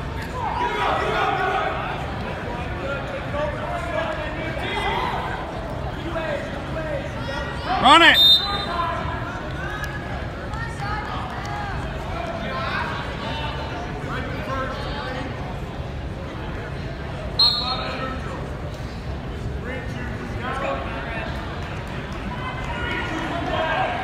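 Crowd noise in a school gymnasium: many voices talking and calling out, with a loud shout of "Run it!" about eight seconds in and a brief high-pitched blast about two-thirds of the way through.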